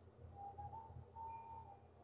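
Near silence: a pause with faint room tone and a low hum.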